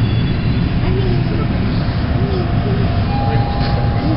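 Steady low rumble inside a Toronto subway car, with a faint steady tone coming in about three seconds in and quiet voices underneath.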